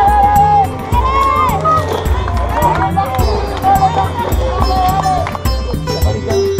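Music with a sung melody over a steady bass beat.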